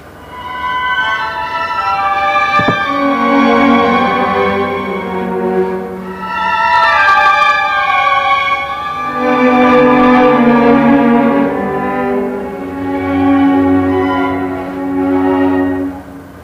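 Solo cello with a string chamber orchestra playing a slow classical passage: low held notes under higher bowed melodic lines. It comes in softly and rises and falls in several long swells.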